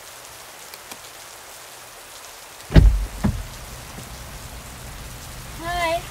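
Steady patter of rain on a car's windshield and roof, heard from inside the car. A bit under three seconds in comes a heavy thump with a second knock just after, as a car door is opened, and the rain is louder through the open door from then on.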